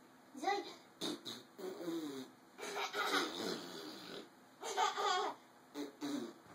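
Laughter and playful, wordless vocal sounds in several short bursts, from an older girl playing with a baby.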